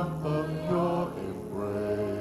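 Church worship singers singing a song together over instrumental accompaniment, holding long notes.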